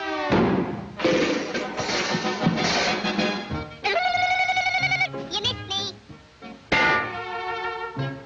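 Orchestral cartoon score with sound effects of thrown knives and a cleaver thunking into a wooden wall. About four seconds in, a high ringing trill sounds for about a second.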